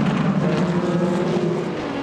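Several LMP2 prototype race cars' Gibson V8 engines running at speed on track, a steady blend of overlapping engine notes that dips slightly in pitch.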